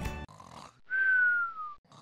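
Cartoon snore sound effect: one whistled out-breath, about a second long, sliding gently down in pitch, starting about a second in.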